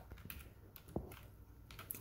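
A few faint key clicks on a cheap computer keyboard, the clearest one about a second in.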